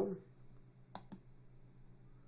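Two quick computer mouse clicks about a second in, choosing a program from a right-click menu, over faint room tone.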